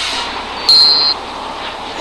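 Cartoon time bomb's countdown timer beeping once about two-thirds of a second in, a single high electronic beep lasting about half a second, over steady background noise.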